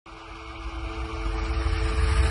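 Cinematic logo-intro swell: a low rumble with a few held drone tones, growing steadily louder as it builds toward a hit.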